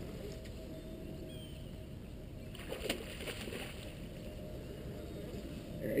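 Faint steady low rumble of water and wind around a small fishing boat as a large conventional reel is worked against a hooked catfish, with a brief rattle about three seconds in.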